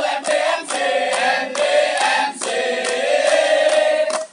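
A group of voices singing or chanting together, with held notes and some sharp percussive strikes or claps in the mix.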